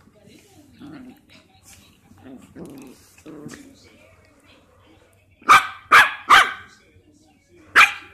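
Yorkshire terrier puppies at play, with low growling in the first few seconds, then four sharp barks: three in quick succession about five and a half seconds in and one more near the end.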